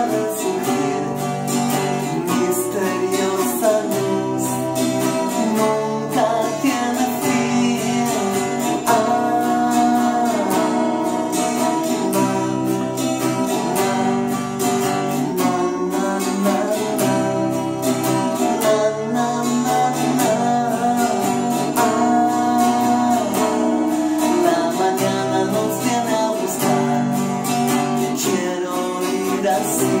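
Twelve-string guitar strummed in steady chords, playing a song.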